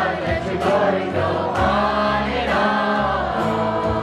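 Live gospel worship music: male and female voices singing together over acoustic guitar, with sustained low notes underneath.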